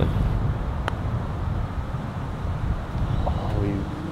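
Wind rumbling on the microphone, with one light click of a putter striking a golf ball about a second in. Faint voices near the end.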